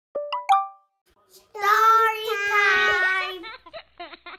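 Children's intro jingle: a few quick bubbly pops, then a child's voice singing a long, held phrase, followed by a run of quick short notes.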